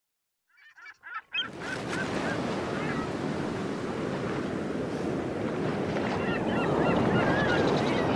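Sea waves washing on a shingle beach, a steady surf noise that comes in suddenly about a second and a half in, with birds calling over it; a few short bird calls come just before it.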